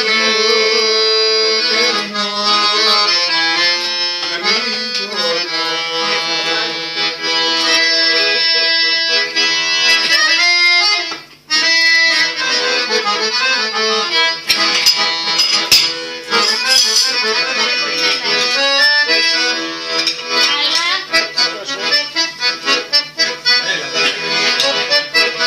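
Piano accordion playing a tune, with a brief break about eleven seconds in and short, rhythmic chords toward the end.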